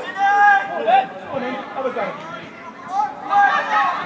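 Men shouting on a football pitch during play: one long held call near the start and another near the end, with shorter shouts and faint chatter between.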